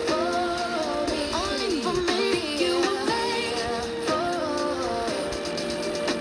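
A song with a singing voice playing from a portable FM radio tuned to 93.1 MHz, heard through its small speaker with a thin sound and little bass.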